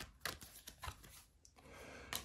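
Faint slaps and clicks of a tarot deck being shuffled by hand, a quick run of them in about the first second.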